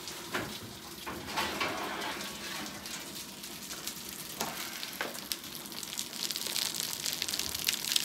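Freshly baked puff pastry sizzling and crackling on a hot baking sheet just out of the oven, with a few sharp clicks.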